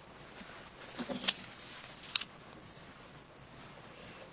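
Quiet room with a few brief, sharp clicks: a cluster about a second in and one more about two seconds in.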